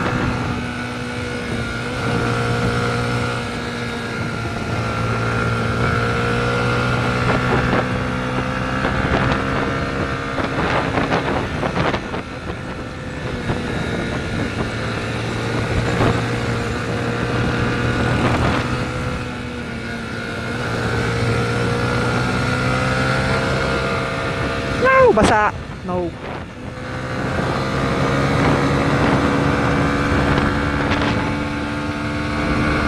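Yamaha 150cc motorcycle engine running while riding, its pitch rising and falling gently with the throttle, with wind noise over it.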